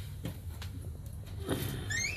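Steady low machinery hum inside a ship's cabin, with a few light knocks, and a short high squeak with a wavering pitch starting right at the end.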